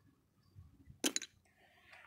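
Near silence, broken about a second in by a short clatter of two or three quick clicks.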